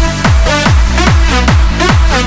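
Electronic dance music from a Hands Up / techno DJ mix: a steady four-on-the-floor kick drum a little over twice a second, a bass line between the kicks, and a synth melody on top, with no vocals.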